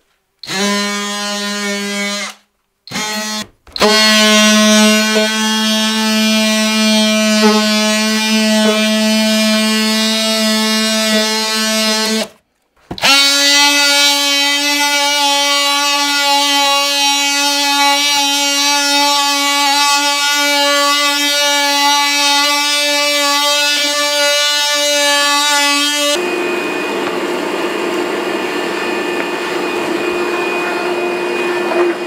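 DeWalt cordless oscillating multi-tool with a sanding pad, running as it sands mold off plywood, a steady buzzing whine. It stops briefly a few times in the first seconds and again about halfway through, then runs a little higher in pitch. Near the end it gives way to a steadier rushing noise.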